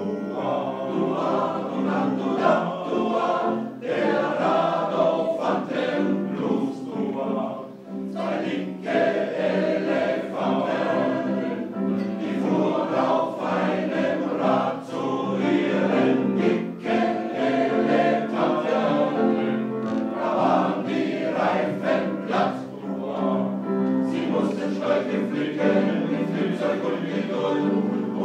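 Men's choir singing a blues number with upright piano accompaniment.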